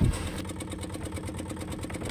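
Fishing boat's engine idling steadily, with an even pulse.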